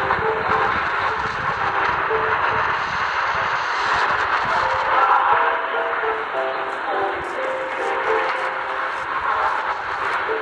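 Music from the Hope Radio shortwave broadcast on 9965 kHz playing through the small speaker of an XHDATA D-808 portable receiver: short melodic notes over a steady hiss of shortwave noise.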